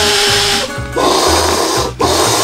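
A person blowing into the valve of an ultralight inflatable sleeping pad to inflate it: long hissy breaths, over background music.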